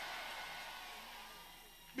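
The faint, blended murmur of a congregation's many voices in a large hall, fading away over the two seconds.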